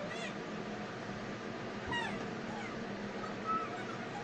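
A cat meowing in short calls that fall in pitch, one right at the start and another about two seconds in, over a steady background hiss.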